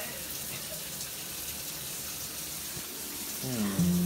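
Steady hiss of water running from a tap. Music fades in near the end.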